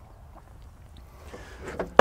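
Low, steady outdoor background noise, with a faint rise near the end.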